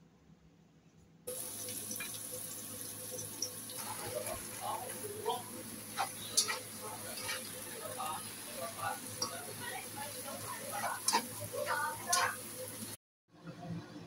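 Snow pea leaves and garlic stir-frying in a pan: a steady hiss of sizzling wet leaves in hot oil starts suddenly about a second in. A few sharp clicks of a utensil against the pan come through it, and the sound cuts off just before the end.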